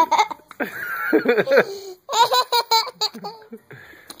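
A young girl laughing hard in quick high-pitched bursts, with short breathy pauses between them.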